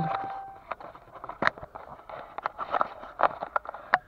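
A steady electronic beep that ends under a second in, then irregular clicks and knocks of a handheld camera being turned around and repositioned inside a pickup truck's cab.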